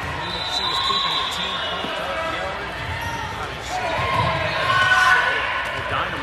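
Gym full of indistinct voices from players and spectators, with a ball bouncing on the hardwood floor a few times.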